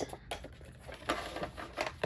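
Paper being handled and folded by hand: short rustles and crinkles of a scored paper strip, with a few light clicks.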